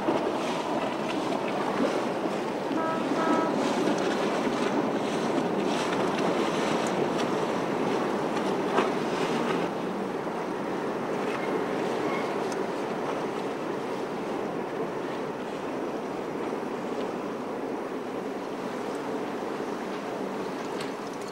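Steady rushing wash of water, with wind, as a river barge passes close by, easing off a little about halfway through. A few short faint notes sound about three seconds in.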